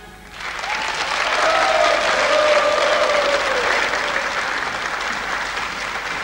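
Studio audience applauding as a pop song ends, starting about half a second in and holding steady.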